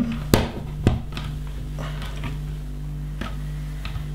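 LEGO bricks clicking and tapping as pieces are pressed onto a model, with two sharp clicks in the first second. A steady low hum runs underneath.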